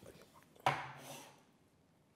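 A ceramic mug set down on a wooden table: one sharp knock about two-thirds of a second in that fades quickly, after a few faint handling clicks.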